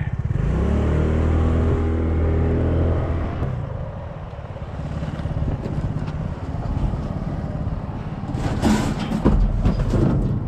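A vehicle's engine accelerating as it pulls away, its pitch rising over the first three seconds, then running on more quietly. Near the end comes a short, loud burst of noise.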